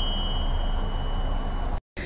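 Tingsha cymbals ringing out after being struck together: two clear high tones fading away, the higher one dying within the first second and the lower one lingering until shortly before the end. The sound cuts out briefly just before the end.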